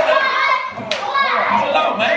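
A group of children shouting and chanting together in excited horseplay, with one sharp smack about a second in.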